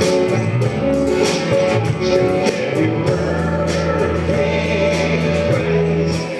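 Live worship band playing a praise song: a man and a woman singing a duet over drums and electric guitar, with a steady beat.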